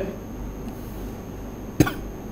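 Low steady background noise with a single short cough near the end.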